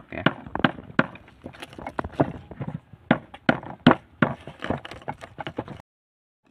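Wooden pestle pounding whole garlic cloves in a shallow wooden mortar (cobek and ulekan): sharp wooden knocks at an uneven pace of about three a second as the cloves are crushed.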